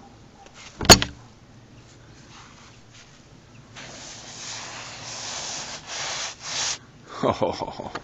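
A single sharp, loud knock about a second in, typical of the ger's wooden door shutting. Then, from about the middle, a few seconds of rough rustling and scraping noise, with a short voice sound near the end.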